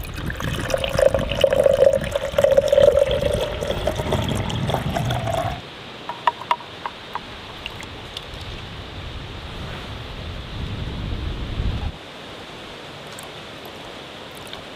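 Water poured into a small glass tank holding a flashlight, the pitch of the pour rising as the tank fills. The pour stops about five and a half seconds in, followed by a few small splashes of water in the tank.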